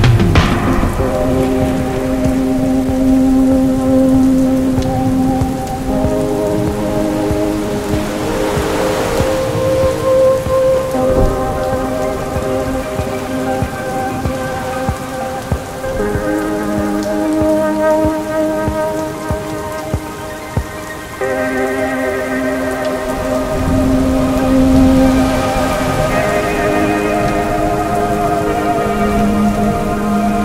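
Sustained synthesizer pad chords that shift about every five seconds, over steady rain. Rolls of thunder swell at the start, about nine seconds in and again later.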